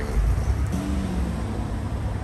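Gas-station fuel dispenser pumping E85 through a nozzle into a car's filler neck: a steady low rush and hum. A brief, slightly falling tone sounds around the middle.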